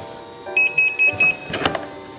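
A desktop laminator gives four quick electronic beeps. Then the stiff laminated sheet clicks and crackles as it is handled. Soft background music plays throughout.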